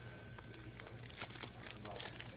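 Quiet store room tone: a steady low hum with scattered small clicks and taps, and faint distant voices near the end.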